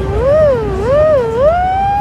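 A loud, siren-like wailing tone with a voice-like quality: its pitch swings up and down about three times, then glides up about one and a half seconds in and holds a steady higher note.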